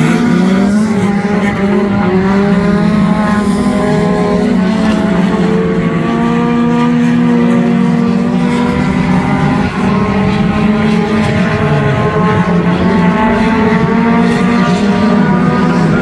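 Engines of several front-wheel-drive four-cylinder race cars running hard together, their overlapping pitches rising and falling as the cars lift and accelerate around the track.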